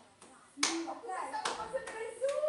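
A few sharp single hand claps, the loudest a little over half a second in, over a voice talking in the background.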